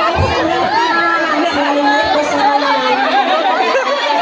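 A crowd of many voices talking and calling over one another at once, at a steady loud level.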